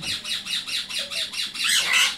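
Sun conure squawking in a fast, steady string of short high-pitched screeches, about four a second.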